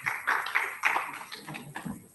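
Brief scattered applause from an audience, a patter of claps that dies away over about two seconds.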